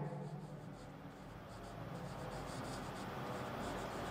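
Marker pen writing on a whiteboard: a run of faint, short strokes that begins about a second and a half in.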